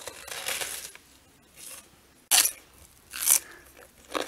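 A person biting into and chewing crisp lettuce leaves: a few crunches, with two sharp, loud ones in the second half.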